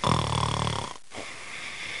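Cartoon snoring sound effect: a low, rattling snore on the breath in, then a quieter hissing breath out, one snore cycle.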